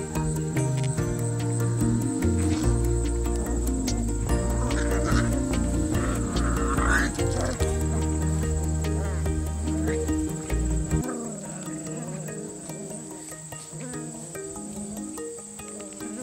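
Background music of held, stepping notes over a deep bass line; the bass drops out about eleven seconds in, leaving lighter notes. A steady high trill sits underneath.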